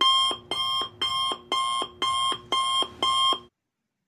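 Electronic alarm beeping: a rapid, evenly spaced series of short beeps, about two a second, each dropping to a lower tone at its end. The beeps stop suddenly about three and a half seconds in.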